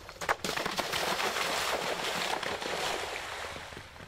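A horse jumping down a bank into a water jump: a couple of sharp knocks near the start, then about three seconds of splashing spray that fades near the end.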